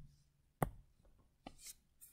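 Two faint taps about a second apart, the second followed by a brief light scratch: a stylus writing on a tablet.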